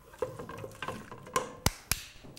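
A spoon stirring a sauce in a stainless steel pot, knocking against the pot's side several times, with two sharp knocks near the end.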